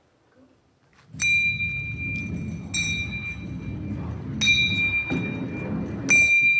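A metal ball rolling down a long wooden ramp with a low rumble, striking small bells set along it one after another: three clear rings evenly spaced about a second and a half apart. The even spacing in time, with the bells set ever farther apart down the ramp, is the sign of the ball accelerating under gravity, distance growing as the square of time.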